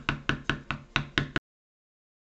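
Mallet tapping a stamping tool into leather to tool a shepherd's belt: rapid, even knocks about five a second. They stop abruptly about one and a half seconds in.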